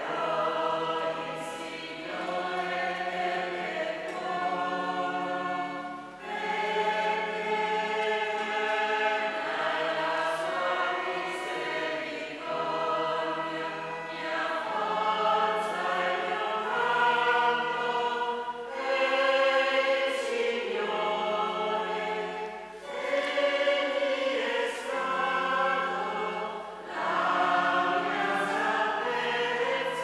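Parish choir singing the Gospel acclamation in long held chords that change every second or two, in a reverberant church.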